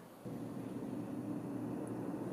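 Faint, steady, low rushing hiss of room tone in a quiet room, beginning about a quarter second in after a brief near-silent gap.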